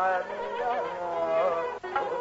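Hindustani classical khayal singing in Raag Darbari from an old live recording: a voice sliding and oscillating through ornamented notes over steady accompaniment, with a brief break near the end.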